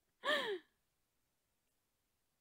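A woman's short voiced sigh, half a second long, its pitch rising briefly and then falling away.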